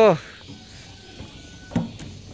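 Speech: a single spoken word at the start, then quiet background with a short voice-like sound near the end.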